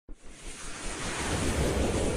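Rushing whoosh sound effect of an animated logo intro, a noise that swells steadily louder over the two seconds.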